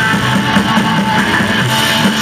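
Live rock band playing at a steady, loud level: strummed electric guitars over a drum kit.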